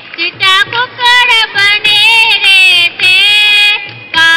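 A woman singing a high, ornamented folk melody in short phrases, with long held notes around the middle and near the end.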